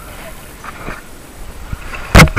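Water sloshing and dripping at the pool edge as a swimmer climbs out, with a few faint short sounds about a second in.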